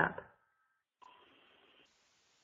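A woman's last word trails off, then near silence on the call line, broken by a faint hiss for under a second.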